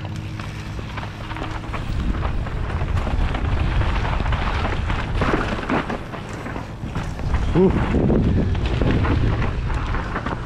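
Mountain bike descending a dirt forest trail at speed, recorded on a body-mounted action camera: wind rushing over the microphone with tyres rolling on dirt and repeated knocks and rattles from the bike over roots and bumps.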